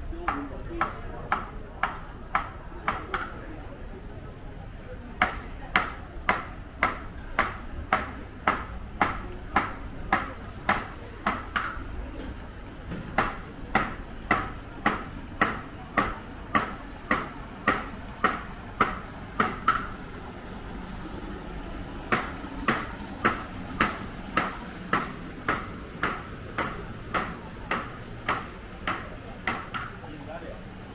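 Hard-soled footsteps on stone paving: sharp ringing clicks at a walking pace of about two steps a second, in runs of several seconds broken by three short pauses.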